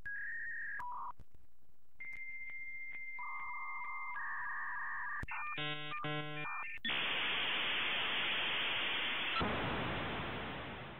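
Dial-up modem handshake. It opens with a couple of short dialing tones, then a steady high answer tone that a lower tone joins, then two short bursts of warbling tones, and from about seven seconds in a steady loud hiss of line noise, as on a telephone line.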